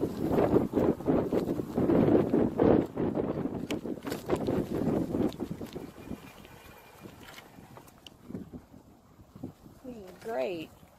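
Wind and handling rumble on a phone's microphone, loud and fluttering, dropping away about six seconds in to a quiet stretch with a few faint clicks.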